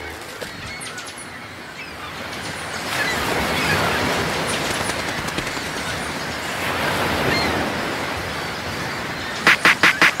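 Outdoor ambience: a steady noisy hiss with a few faint bird-like calls. Near the end a fast run of sharp beats, about six or seven a second, starts a song.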